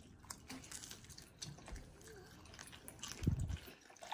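Faint mouth sounds of a child biting and chewing thin-crust pizza, with small clicks and one soft, short thump a little over three seconds in.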